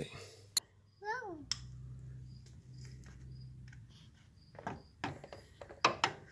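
A toddler's brief sing-song babble, rising and falling in pitch, after a sharp click; then a faint steady low hum and a few short sounds near the end.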